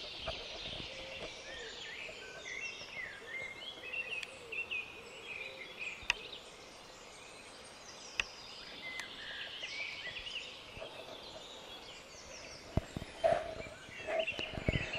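Woodland birdsong: several small birds chirping and warbling throughout, with two sharp clicks near the middle.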